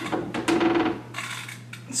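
Plastic threaded connector cap being screwed tight onto the PVC housing of an aquarium UV sterilizer. The plastic threads give a rapid grating, clicking sound during the first second, then fade.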